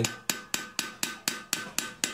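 Hammer tapping the end of a screwdriver in quick, even light blows, about four a second, driving its tip between an old cylinder sleeve and the cylinder wall of a Mitsubishi 4D55T turbo-diesel block to chip into the sleeve and cut it free.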